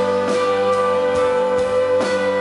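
Live song: a long held sung note over strummed acoustic guitar and band.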